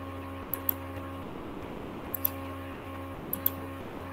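Computer mouse clicking four times, each click a quick press-and-release pair, about every second and a half, over a steady electrical buzzing hum picked up by an open microphone on a video call.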